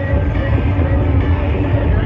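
Loud music with heavy, dense bass played through large stacked outdoor sound-system speakers, running without a break.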